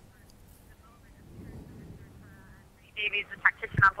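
Faint, low wind and water noise from the race course, then a commentator starts speaking about three seconds in.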